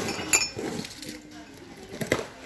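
Ceramic mugs clinking against each other as one is lifted from a stack. There are two clinks, the second and louder one about a third of a second in, with a brief ring.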